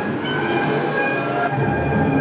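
Free-improvised ensemble music with brass: several held, clashing tones layered over a dense wash of sound, and a low note entering near the end.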